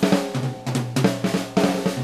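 Rock drum kit playing a fill of snare and bass drum strokes in a break of the song, with a few held notes from the rest of the band underneath, leading into the chorus.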